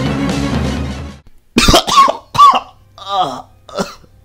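Background music stops about a second in, then a person's voice coughs and groans four times in short, separate bursts.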